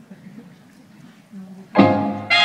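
Faint low voices in the room, then a recorded salsa song starts suddenly and loudly over the PA speakers near the end.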